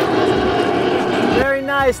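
Jet airliner flying low overhead: steady jet engine noise with a held whine. It gives way to a man's voice about one and a half seconds in.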